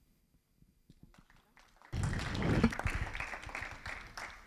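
Silence, then audience applause that starts suddenly about halfway through and begins to die away near the end.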